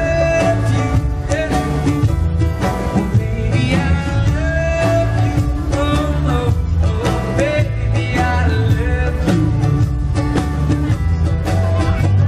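Live band music: a man singing into a microphone while strumming a ukulele, backed by electric guitar and a drum kit with a steady beat.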